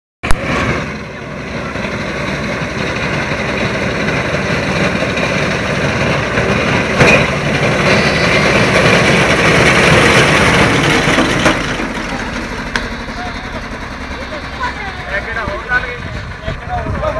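A fodder reaper's engine running, louder through the middle and easing back after about eleven seconds, after a sharp click at the very start.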